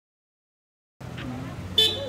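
Dead silence for about the first second, then street noise with a vehicle engine running. Near the end a vehicle horn gives one short, loud toot.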